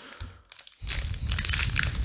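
Foil wrapper of a Paldean Fates Pokémon booster pack crinkling as it is handled and opened, starting just under a second in after a quiet moment.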